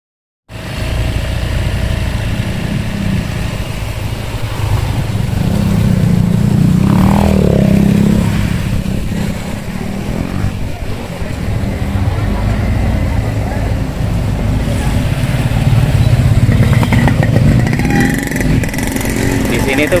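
Motorcycle engine running as the bike rides along a rough village road, a steady low rumble that grows louder a few seconds in and again later on.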